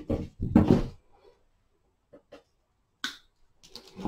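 Thin wire being handled and cut with wire cutters: a couple of faint ticks, then a sharp click about three seconds in and a few smaller clicks near the end. A brief sound of a voice comes first.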